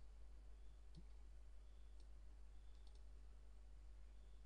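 Near silence with a few faint computer mouse clicks, about one, two and three seconds in.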